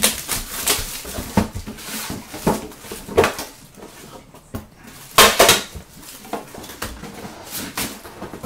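Cardboard trading-card boxes being handled: a string of scrapes, rustles and clicks as a box is opened, an inner box lifted out and set down, loudest about five seconds in.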